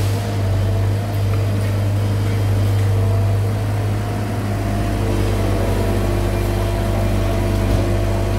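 Komatsu PC75 excavator's diesel engine running steadily at working revs, a loud low hum, while the arm lifts a bucket of soil and swings it toward the truck.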